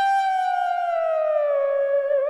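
Doepfer A-100 analog modular synthesizer holding a single bright, buzzy note that glides smoothly down in pitch from about half a second in, then settles on the lower note.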